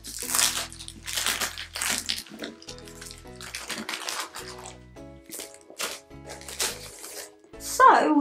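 Paper and plastic packaging rustling and crinkling in short, irregular bursts as a magazine packet is opened and handled, over background music.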